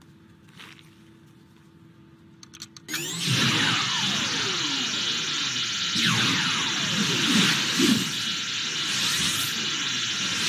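Sci-fi machine sound effects from an animated show, plausibly Professor Hamilton's Phantom Zone projector being switched on for a test. A faint steady hum is followed, about three seconds in, by a sudden loud rush of electronic noise with many falling whistling tones that carries on.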